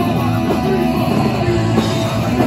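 Live punk rock band playing loud: electric guitar, bass guitar and drums.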